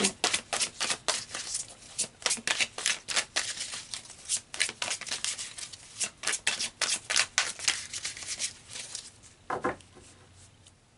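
Deck of tarot cards being shuffled by hand: a quick, irregular run of crisp card snaps and flutters that thins out near the end.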